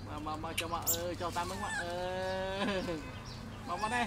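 Baby macaque crying: a run of short wavering cries, then one long held cry that drops in pitch near the three-second mark.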